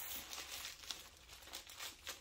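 Faint crinkling and rustling of wrapping being handled as a small wallet is unwrapped by hand, with a few light ticks.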